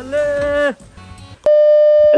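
A short held note in the intro music, then, about a second and a half in, a loud steady electronic test tone starts suddenly: the bars-and-tone beep of a TV colour-bar test pattern.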